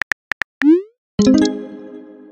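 Sound effects of a simulated phone text chat: keyboard taps clicking as a message is typed, then a short rising bloop as it is sent. A little after a second in comes a ringing chord of several tones that slowly fades.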